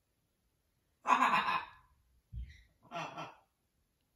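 A macaw makes two breathy, sigh-like vocal sounds, about a second in and again near three seconds. There is a short low thump between them.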